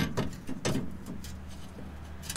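A front axle shaft being slid and turned into the axle housing, with a few sharp metal knocks and clacks as its splined end catches, the loudest at the start, then lighter scraping over a low steady hum.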